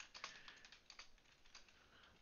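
Faint computer keyboard typing, a few soft key clicks in the first half second, then near silence.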